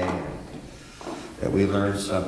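A man praying aloud in a low, even voice. The voice breaks off for about a second in the middle, then resumes.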